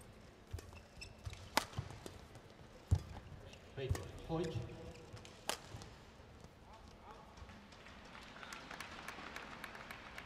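Badminton rally: sharp racket strikes on the shuttlecock a second or two apart, mixed with footfalls on the court and a short squeal about four seconds in. Crowd noise in the hall rises near the end as the point finishes.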